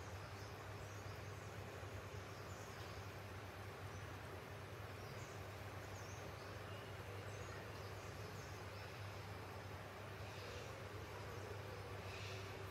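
Quiet background ambience: a steady low hum under faint hiss, with scattered faint high chirps.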